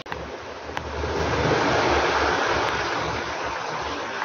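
A steady rushing noise of air on the microphone, swelling about a second in and easing off toward the end, with a faint click at the start and another just under a second in.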